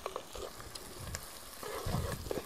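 Tomato plant leaves and stems rustling as a hand moves through them picking tomatoes, with scattered small clicks and snaps.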